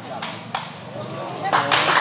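A couple of sharp smacks of a sepak takraw ball being kicked during a rally, over crowd chatter that swells into loud shouting near the end.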